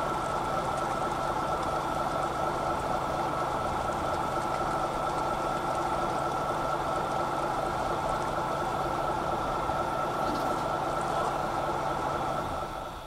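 A boat engine running at a steady speed: a constant drone with a steady high tone above it.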